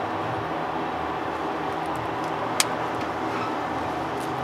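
Steady background hiss and low hum, with a single sharp metallic click about two and a half seconds in from the stainless steel watch bracelet or its butterfly clasp being handled.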